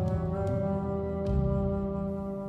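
Background music with long held tones, the low notes shifting about a second and a half in.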